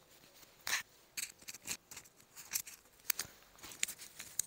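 Handling noise picked up by a wireless lavalier microphone as it is clipped onto a jacket: irregular scratchy rustles and small sharp clicks as fingers and the clip rub against the mic, the friction noise of handling a lapel mic.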